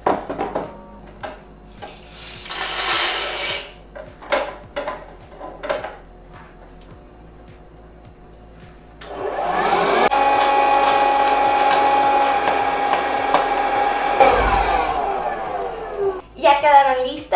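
A few clicks and a short rattle of handling. Then, about nine seconds in, a Hamilton Beach 73400 hot-air popcorn popper's fan motor switches on, spins up and runs with a steady whine for about five seconds before stopping.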